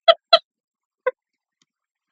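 A woman laughing hard in short rhythmic bursts. The last two come right at the start, with one faint breathy pulse about a second in before the laugh dies away.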